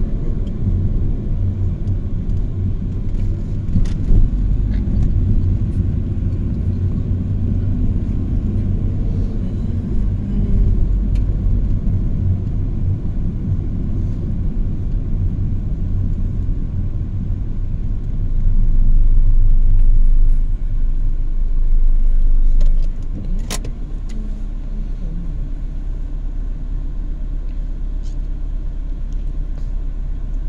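Car engine and road noise heard from inside the cabin while driving, a steady low rumble that swells for a few seconds past the middle, then drops to a quieter, even hum as the car stops in traffic. A single sharp click comes just after the drop.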